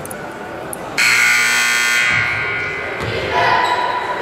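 Gym scoreboard buzzer sounding once for about a second, cutting in and out sharply: the signal that ends a timeout. A basketball bounces on the hardwood floor in the second half.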